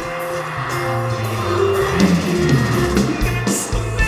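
Live norteño band music played through the stage sound system, with button accordion, drums and a stepping bass line.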